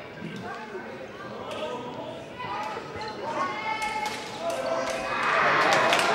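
Voices calling out during a fencing bout, over fencers' feet thudding on the piste; about five seconds in, applause and cheering break out as a touch is scored.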